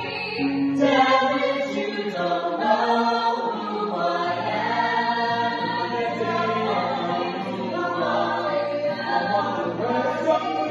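A small mixed group of men's and women's voices singing a song together in harmony, with long held notes.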